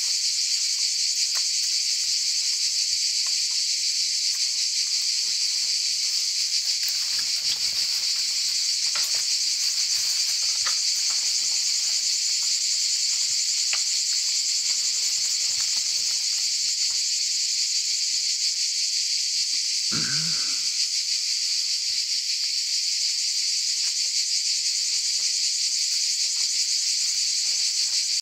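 Steady, high-pitched drone of an insect chorus, unbroken and loud, with faint scattered clicks underneath.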